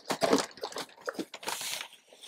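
Dry potting compost being scooped and handled: irregular rustling and crunching with a few light clicks.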